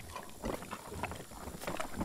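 Bison eating range cubes close to the microphone: irregular crisp crunches and clicks several times a second as they chew the cubes and pick them off a cloth-covered table.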